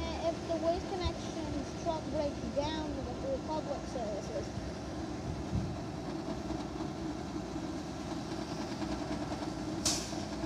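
Diesel engine of an Autocar front-loader garbage truck running steadily, heard from across the lot, with low voices over it and a sharp click near the end.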